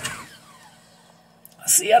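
A quiet pause with only a faint, steady low hum, then a man's voice starts speaking near the end.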